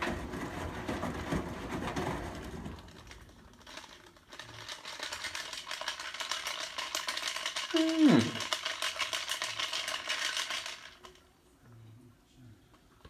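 Front-loading washing machine on a delicates cycle: water and wet clothes sloshing and rattling in the turning drum. The drum pauses briefly about four seconds in, then turns again for about seven seconds, with a short falling whine about eight seconds in, before stopping near the end.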